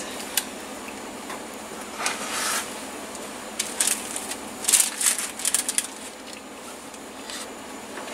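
Metal spring-release ice cream scoop scraping cookie dough from a mixing bowl and releasing it onto a parchment-lined baking sheet: scattered short clicks and brief scrapes over a steady low hiss.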